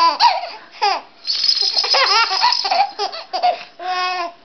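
A 16-week-old baby laughing hard in quick repeated bursts of high-pitched laughter, with short pauses about a second in and near the end.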